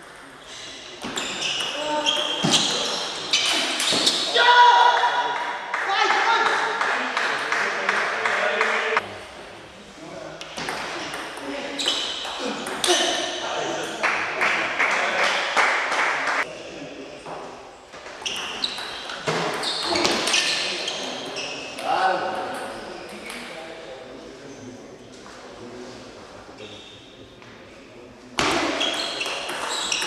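Table tennis rallies: the celluloid-type ball clicking off bats and table in quick runs of strokes, broken by short pauses between points.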